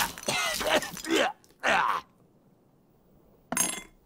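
Cartoon character voices speaking for about two seconds, then a pause, then a short crash near the end.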